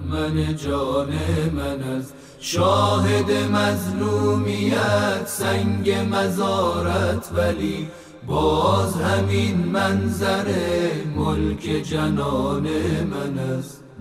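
A solo voice singing a Persian mourning elegy in long drawn-out phrases over a low steady accompaniment, with short breaths between phrases about 2 and 8 seconds in.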